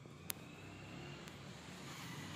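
Faint background rumble and hiss that grows slowly louder, with a single sharp click about a third of a second in.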